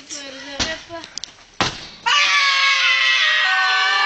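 Two sharp bangs, then about two seconds in several children break into loud screaming together, held on without a break.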